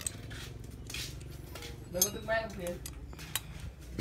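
Small metal clicks and taps of a screw and screwdriver against an aluminium motorcycle throttle body as the screw is pushed through and the tool is fitted.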